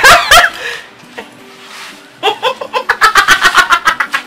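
A woman laughing loudly and mockingly: a short burst of laughter at the start, then after a pause a fast, staccato "ha-ha-ha" of about seven beats a second.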